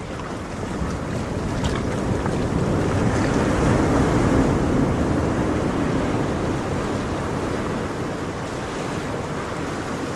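Ocean surf: a wave swells, peaking about four seconds in, then washes back and fades.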